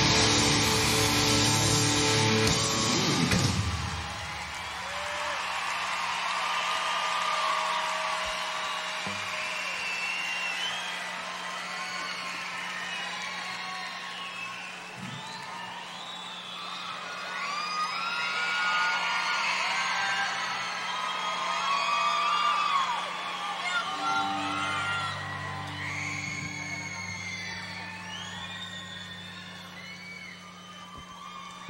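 A live rock band's loud final chord cuts off about three and a half seconds in, then a large arena crowd cheers and screams, full of high shrieks. A steady low hum runs under the cheering, and a few low held notes come in near the end.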